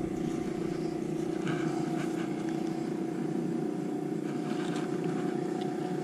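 A boat engine running steadily at one constant pitch, with a few faint handling rustles over it.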